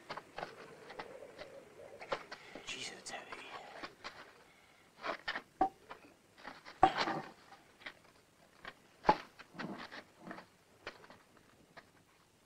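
A heavy stone slab being prised up and shifted: scraping and sharp knocks of stone on stone, loudest about seven and nine seconds in, with breathy sounds of effort early on.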